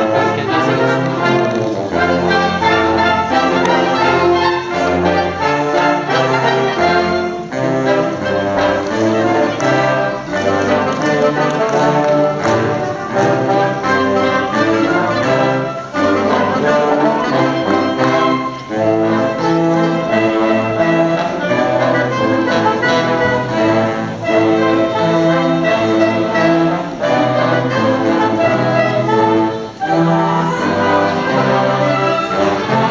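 A live wind band plays: brass, saxophones and flute together, with short breaks between phrases.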